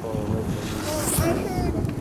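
Wind rushing over the microphone, with indistinct voices in the background.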